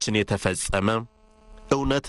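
A man speaking, broken by a short pause a little past halfway in which only a faint steady hum remains.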